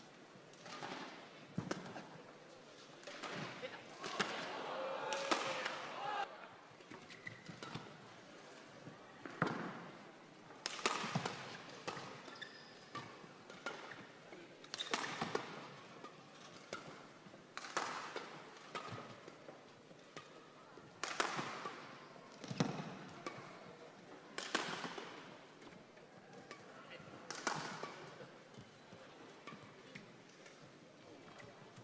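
Badminton rackets striking a shuttlecock back and forth in a doubles rally: sharp, separate hits spaced about one to two seconds apart.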